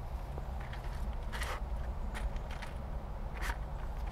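Steady low rumble of a car's cabin, with three brief soft rustles spread through it.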